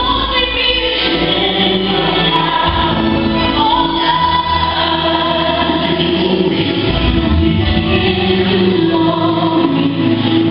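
Gospel music with a choir singing over a steady, held bass line.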